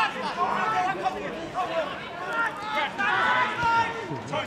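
Indistinct chatter of spectators' voices at a football ground, running on through the play.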